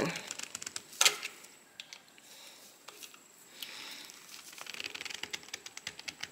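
Faint clicks and scrapes of a screwdriver bit working at a stuck screw in a Singer 66 sewing machine head, with one sharper click about a second in and some soft rustling; the screw does not turn.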